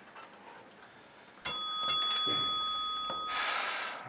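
A small metal object strikes a hard surface twice, about half a second apart, and rings with a clear bell-like tone that fades over about a second and a half. A short rustle follows near the end.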